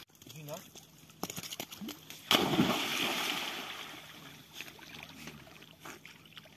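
A single big splash about two seconds in, as an Australian Cattle Dog plunges into the water, then the water churning and settling over the next second or so.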